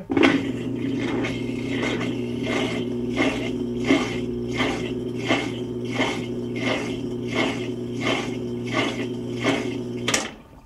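Maytag MVWP575GW top-load washer running its drain cycle with the basket not turning: a steady low hum with a rhythmic pulsing about twice a second, cutting off suddenly at the end.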